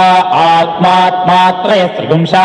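Male Vedic chanting, Sanskrit recited on a nearly level pitch with short breaks between syllable groups. The words are repeated in back-and-forth permutations in the ghana-patha style of Veda parayanam.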